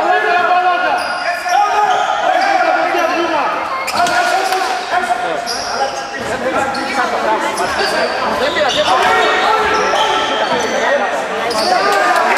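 A basketball being dribbled on a hardwood gym floor during play, with short high squeaks and many overlapping voices of players and spectators calling out, echoing in a large hall.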